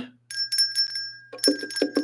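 Small brass handbell shaken, ringing with a string of quick strikes and a sustained tone. A few hand hits on bongos join it in the second half.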